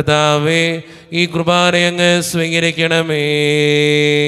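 A priest chanting a liturgical intercession in Malayalam on a steady reciting tone. The phrases are broken by short pauses, and in the last second he holds a long note.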